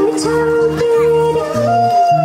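Music: a song with a long-held melodic vocal line over a repeating bass, with a plucked string instrument.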